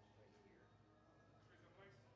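Near silence: room tone with a low steady hum and a faint voice in the background.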